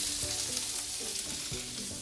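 Sliced bell peppers and onions sautéing in butter in a cast iron skillet: a steady sizzle that grows a little fainter toward the end.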